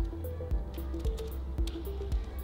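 Background music with a steady beat over a sustained bass line.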